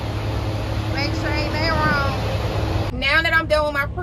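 Steady low rumble of an idling semi-truck diesel engine, with a faint steady hum, under a woman's voice. About three seconds in it cuts off abruptly as close speech takes over.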